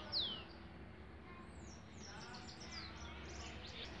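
Small birds calling: a clear whistle falling in pitch just after the start, then a run of faint, short high chirps around the middle.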